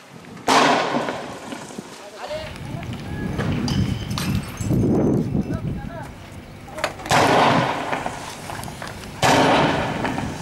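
Three loud bangs like gunshots, each echoing for about a second: one near the start, then two close together near the end. A low rumbling runs under them from about two seconds in.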